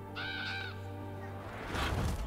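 A crow caws once, short and harsh, in the show's soundtrack, over a steady low music drone; a swell of noise rises near the end.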